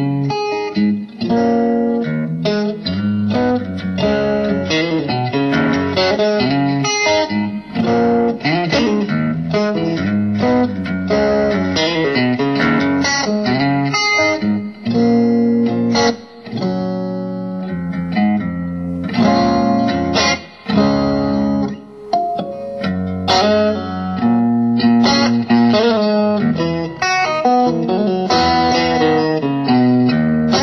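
James Tyler Variax electric guitar played through an amp: a continuous improvised run of single-note lines and chords, with a few short breaks.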